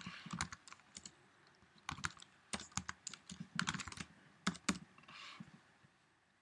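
Typing on a computer keyboard: irregular runs of keystroke clicks that die away near the end.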